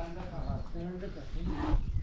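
A person's voice talking indistinctly over a low rumble.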